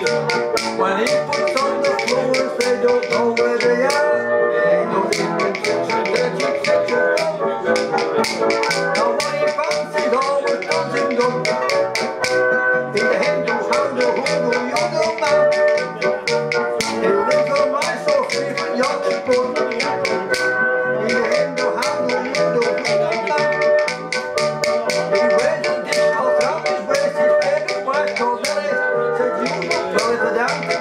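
Banjolele strummed in a brisk rhythm, with a rapid clatter of hand-held percussion clicks played along with it.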